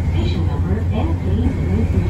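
Nankai 1000 series electric train running, heard from the driver's cab: a steady low rumble of the train on the track, with a voice over it.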